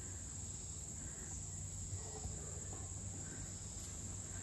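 A steady high-pitched chorus of insects, crickets or katydids, droning without a break over a faint low rumble.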